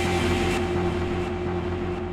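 Electronic hardcore track in a beatless droning stretch: a steady held tone over a low rumbling bass, with a layer of hiss on top that cuts off about half a second in.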